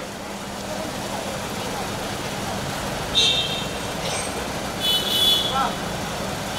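Steady outdoor street and traffic noise with faint voices in the background. Two short high-pitched tones stand out, about three seconds in and again near five seconds.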